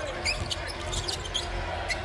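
Basketball court sound: sneakers squeaking on the hardwood floor in short chirps and a ball bouncing, over a steady low arena hum.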